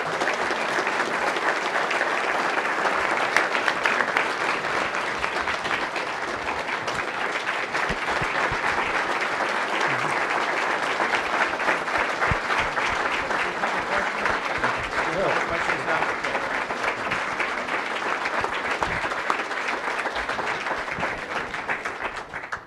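Audience applauding steadily in a large hall, a sustained ovation that stops abruptly right at the end.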